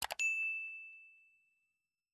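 Two quick mouse clicks, then a single bright bell ding that rings out and fades over about a second and a half. This is the notification-bell sound effect of a subscribe animation.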